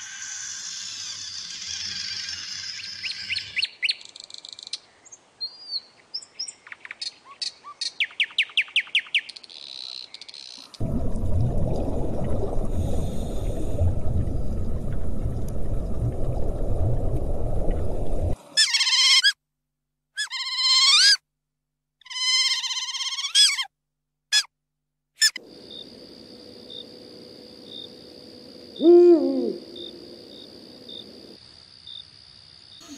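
A sequence of separate nature sound clips: high chirping and trains of clicks and trills, then several seconds of low rumbling noise, then a run of short gliding calls. Near the end an owl hoots once, the loudest sound.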